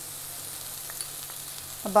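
Sliced onions, potato cubes and green chillies sizzling steadily in hot oil in a frying pan, with a couple of faint ticks about a second in.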